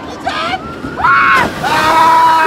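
People screaming with long, held cries starting about a second in, as a log-flume boat splashes down into the pool and its spray rushes up over the bridge.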